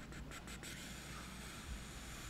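A quick run of light clicks from a laptop keyboard or trackpad as text is selected in the first part, followed by a soft steady hiss for about a second and a half.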